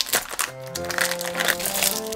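Foil blind bag being torn open and crinkled by hand, a rapid run of crackles, with its plastic inner bag rustling, over background music.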